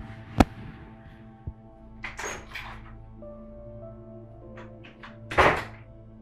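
A room door opening and being shut as someone walks out: a sharp click just under half a second in, a few light knocks and rustles, then a thud near the end as it closes, over soft background music.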